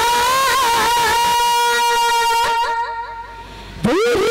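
A girl's solo voice singing a Chhattisgarhi jas geet through a PA, holding one long steady note. The note breaks into quavering turns and fades about three-quarters of the way in, then a new phrase slides up in pitch right at the end.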